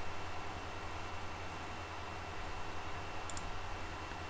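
Steady low electrical hum with a brief double click of a computer mouse about three seconds in.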